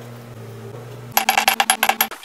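Peeled almonds dropping into a small glass bowl: a quick run of hard clinks on glass, about a dozen in under a second, starting about halfway through. A faint steady hum comes before it.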